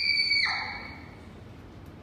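The end of a long high-pitched scream, held on one steady pitch and then dropping and breaking off about half a second in, with a short fading tail.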